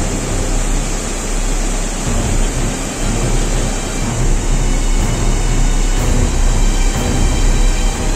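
Muddy river floodwater pouring through a breached embankment in a loud, steady, churning rush.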